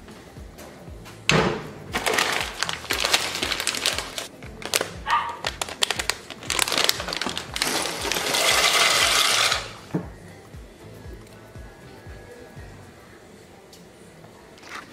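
Dry penne pasta poured from its plastic bag into a pot, a dense rattling rush about two seconds long. It comes after several seconds of rustling and clatter, over background music.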